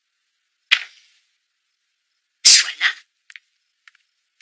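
A single sharp click, then about two seconds later a short breathy burst from a person, like a sneeze or an exhaled exclamation, with silence around them.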